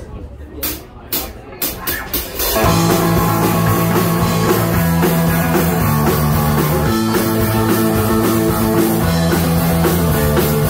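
Live rock band of electric guitar, bass guitar and drums: a few sharp clicks at first, then about two and a half seconds in the full band comes in loud and plays on steadily.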